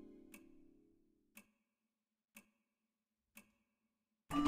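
A clock ticking faintly, one sharp tick about every second, four ticks in all. The last notes of music die away during the first second.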